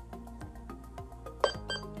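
Faint music through the small speaker of a seQuro GuardPro2 security-camera monitor turned down to a low volume setting, with one short sharp click-like sound about one and a half seconds in.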